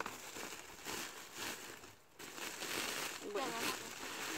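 Woven plastic fertilizer sack crinkling and rustling as hands dig into it to scoop out fertilizer, with a short break about halfway through.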